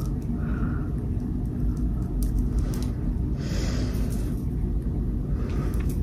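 Steady low background rumble, with a brief soft hiss about three and a half seconds in.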